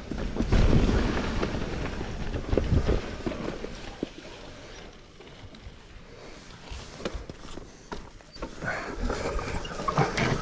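Commencal mountain bike rolling down a dirt singletrack: tyre noise on dirt and roots with short knocks and rattles from the bike, louder over the first few seconds, quieter in the middle and building again near the end.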